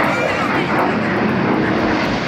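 Fighter jets flying overhead: a loud, steady jet roar without a clear pitch.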